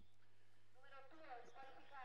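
Near silence: a steady low hum, with a faint voice in the background about a second in.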